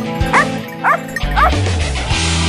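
A pack of Maremma scent hounds barking in short, rising yelps, three about half a second apart, as they worry a downed wild boar. Background music plays under the barking and swells with a heavy bass beat just past the middle.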